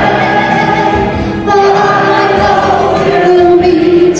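A woman sings a slow melody into a microphone over backing music, holding each note. Many voices sing along with her in chorus.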